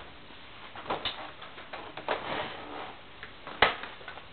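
Handling noise from an electric guitar being picked up: rustling and a few light knocks, then one sharp click near the end.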